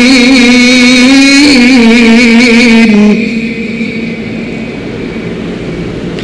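A man's voice in melodic Quranic recitation, holding one long wavering note into a microphone. The note ends about three seconds in, and a quieter steady noise follows.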